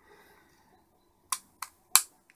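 Three sharp clicks in the second half, the last one the loudest: a circuit board being pressed down into a plastic DIN-rail meter case, seating on the case's small plastic locating pips.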